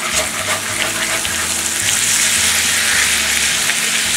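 Diced potatoes sizzling steadily in oil in a cast iron skillet as a spatula stirs through them, with a few light scraping clicks in the first second.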